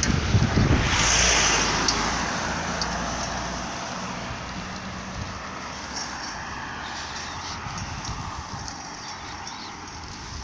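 A road vehicle passing close by: its engine and tyre noise swells to its loudest about a second in, then fades away over the next few seconds.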